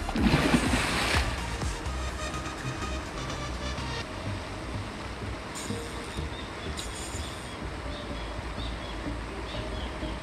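A hooked fish splashes and thrashes at the water's surface for about a second at the start, over background music with a steady low beat.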